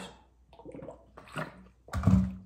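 A few gulps of water swallowed from a large plastic water jug, then a sharp knock just before the end as the jug is set down.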